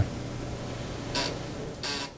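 Steady low electrical hum over faint hiss, with two short hissy sounds, one about a second in and one near the end.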